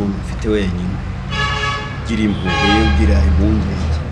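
A car horn sounds twice, each toot about a second long, over a man talking.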